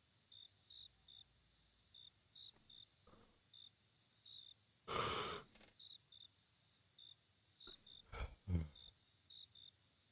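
Crickets chirping in a faint night ambience: short high chirps about every half second over a steady high insect drone. A breathy sigh comes about five seconds in, and a couple of brief soft sounds with a low thud come near the end.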